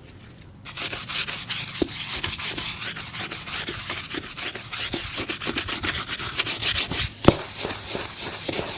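Small brush scrubbing the lathered upper of a shoe in rapid back-and-forth strokes, starting about a second in after a short pause. A single sharp tap stands out near the end.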